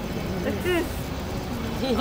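Lull between voices on a city street: a steady low rumble of urban background noise, with a short faint vocal sound about halfway through and a voice starting up again at the very end.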